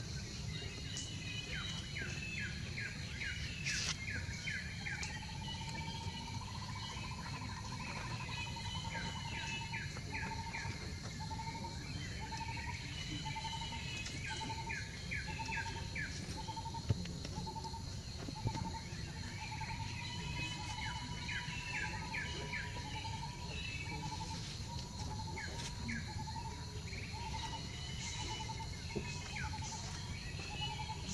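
Birds calling: bursts of rapid chirping trills come and go, while another bird repeats a single short note about once or twice a second from several seconds in. A steady high hum and low rumble run underneath.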